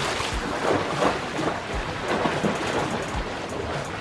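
Water splashing irregularly as a swimmer's arm strokes and kicks churn the surface of a swimming pool.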